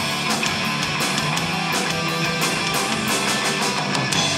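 Punk rock band playing live: distorted electric guitars, bass guitar and drum kit in a loud instrumental passage without vocals.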